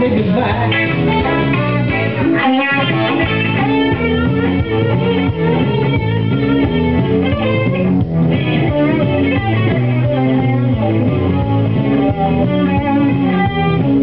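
Live blues band playing an instrumental passage: an electric guitar plays a lead line over guitar and bass accompaniment, with no singing.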